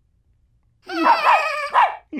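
Cartoon puppy's voiced barks: a few quick, excited yips starting about a second in.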